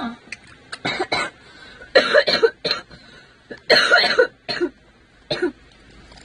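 A person coughing repeatedly, in short separate bursts spread across a few seconds.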